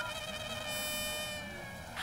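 Soft film background music of sustained held tones, with a brief high shimmer about a second in.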